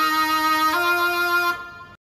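Held chords on a MainStage patch played from a Yamaha arranger keyboard. The chord changes under a second in, then dies away about a second and a half in.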